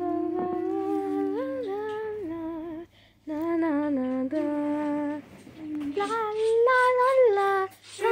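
A female voice humming a slow, wordless tune in held notes that step up and down, after a short cough at the start. The humming breaks off briefly about three seconds in.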